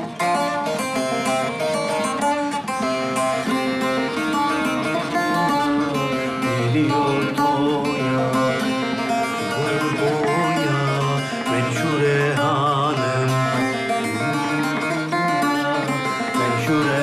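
Bağlama (Turkish long-necked lute) playing a folk tune, a steady run of plucked and strummed notes with its strings ringing together.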